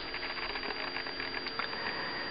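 Faint scratching and light ticks of a hand and felt-tip marker moving over paper, over a steady low hum.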